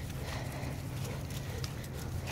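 Footsteps on wet field grass, soft irregular treads over a low steady hum.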